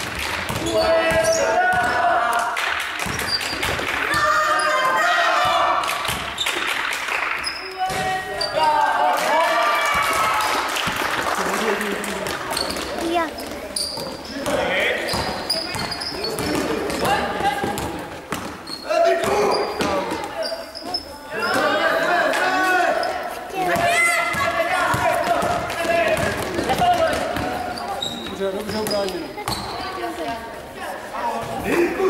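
Basketball dribbled and bouncing on a sports-hall floor during play, with players' and spectators' shouting voices and brief high sneaker squeaks, all echoing in the gym.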